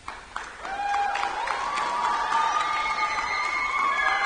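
Arena audience clapping and cheering, with a few long held cheers over the clapping.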